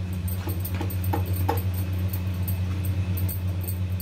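Silicone spatula stirring a thick, simmering mixture of milk and cracked wheat in a kadhai, with a few short scrapes against the pan in the first second and a half. A steady low hum runs underneath.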